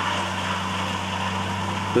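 Flory tracked orchard mulcher, its 450-horsepower engine and front hammer mill running steadily as it chops walnut prunings: an even drone with a constant hum. The machine is working easily, hardly loaded by the three- to four-inch wood.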